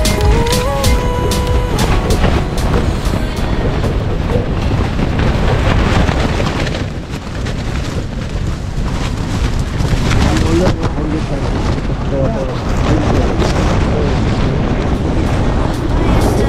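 Strong storm wind rushing and buffeting the microphone: a loud, continuous noise that eases for a moment about halfway through.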